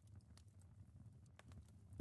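Near silence in a pause of narration: faint room tone with a few soft, scattered clicks.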